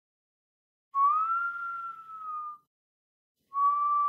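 A clean, whistle-like synthetic tone sounds twice: the first rises a little and holds for about a second and a half, and the second, starting about a second before the end, holds steady. It is an opening sound effect for the video.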